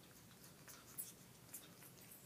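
Near silence with a few faint scratchy clicks from an African grey parrot nibbling at the man's hair and shifting on the cage.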